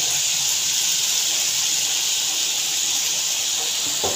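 Small shrimp frying in hot mustard oil in a kadhai, a steady high hiss of sizzling at an even level.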